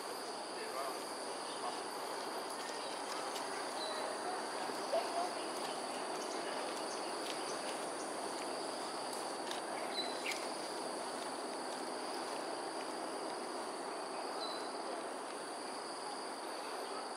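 Steady, high-pitched drone of calling insects over an even background hum of outdoor ambience, with a few faint short chirps.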